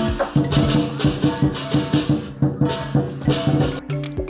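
Percussion music: quick drum beats under repeated cymbal crashes, with low ringing tones beneath. The crashes stop shortly before the end.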